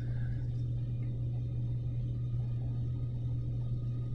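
Steady low hum with a faint background hiss, the room tone of the recording while no one speaks.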